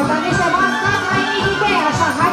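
Romanian traditional folk music with a steady low beat and several pitched parts, with voices over it.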